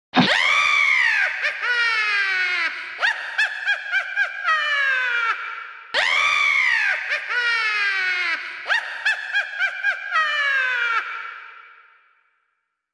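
Witch's cackle sound effect: a high-pitched falling shriek, then a run of quick laughing syllables dropping in pitch. The same cackle plays twice, the second time about six seconds in, and the last one fades out near the end.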